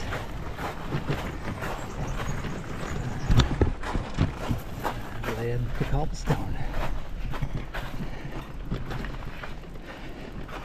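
Bicycle rattling over a rough gravel and cobblestone road surface, with irregular knocks, the hardest about three and a half seconds in. A brief voice is heard about halfway through.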